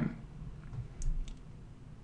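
Two or three faint short clicks about a second in, over low room noise.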